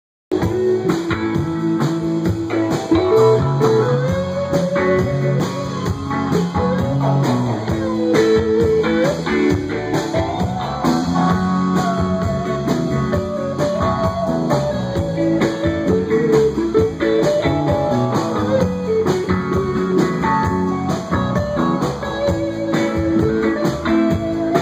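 Live rock band playing an instrumental passage on two electric guitars with drums, the lead line bending and sliding between notes.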